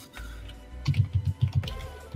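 Typing on a computer keyboard: a quick run of keystrokes starting about a second in.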